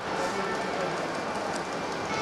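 Steady background noise of an indoor sports hall: a low, even murmur with no distinct ball bounces or other sharp sounds.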